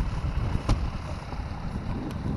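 Wind buffeting the microphone: an uneven low rumble in gusts, with one short click about a third of the way in.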